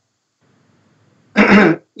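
A man clears his throat once, about one and a half seconds in, after a pause.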